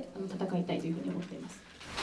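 A voice speaking softly and low in a small room, fading toward the end.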